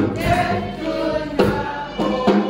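A gospel praise team singing a worship song in a choir, with live band accompaniment. Sharp drum hits land at the start and about a second and a half in.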